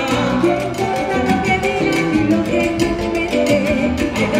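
Live salsa band playing a salsa romántica arrangement: saxophone, timbales and drum kit keeping a steady beat, with a woman singing over it.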